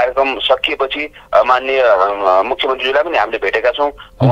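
Speech only: a man talking, with a brief pause about a second in.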